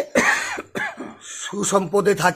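A single harsh cough just after the start, with a person's speech around it.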